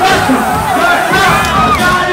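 A crowd shouting and cheering, many voices overlapping.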